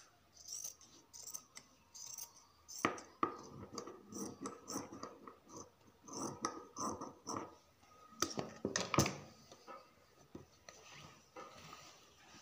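Irregular light clicks, clinks and rustles of small things and cloth being handled at a sewing table, with sharper knocks about three seconds in and again around eight to nine seconds; no machine running.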